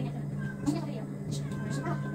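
Faint, distant voices of people talking over a steady low electrical hum.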